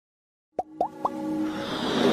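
Electronic intro music for an animated logo: three quick rising 'bloop' pops about a quarter-second apart, then a swell of held tones and a brightening whoosh that builds up.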